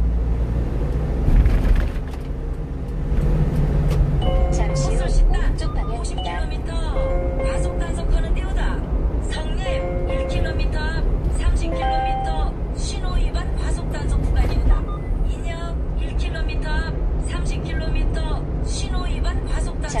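Low engine and road rumble inside a moving light truck's cab. From about four seconds in, music with a voice plays over it.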